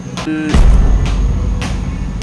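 Motorcycle engine being started: a brief starter whine, then the engine catches about half a second in and runs on with a loud low rumble.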